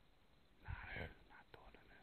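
Near silence broken by a brief, faint whisper a little under a second in.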